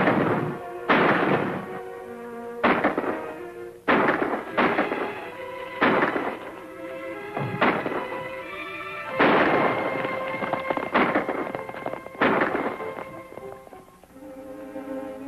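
About ten gunshots at uneven intervals a second or two apart, each ringing out with a long echoing tail, over an orchestral film score.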